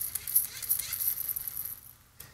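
Hand-squeezed dynamo flashlight being pumped: its lever spins the little generator with an uneven rattling whir and quick clicks.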